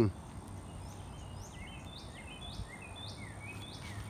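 A bird singing faintly in the background: a run of quick chirps, each sliding down in pitch, about three a second, starting about a second in, over quiet outdoor ambience.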